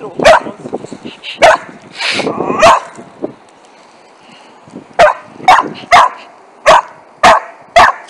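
A Finnish Lapphund crossbreed dog barking sharply and repeatedly at a dachshund that is trying to take her stick: three barks, a pause of about two seconds, then six more in quicker succession.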